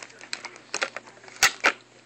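Hard plastic clicking and clacking as action figures are handled and stood together: a few light clicks, then two loud clacks close together about a second and a half in.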